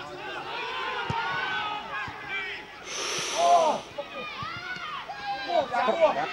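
Several voices of players and spectators shouting and calling across an outdoor Gaelic football pitch, overlapping and indistinct, with a brief hissing noise about halfway through.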